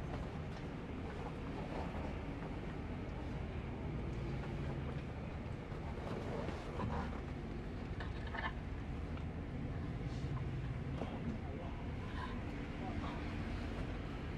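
Steady low drone of a Scania K410IB double-decker coach's engine and road noise as it drives along at a steady pace, heard inside the cabin. A few faint short sounds come and go over it.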